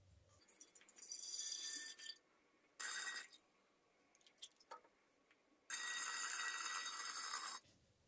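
Fermented apple juice poured from a plastic measuring jug into the neck of a large glass carboy, in separate pours with pauses between, the longest one near the end.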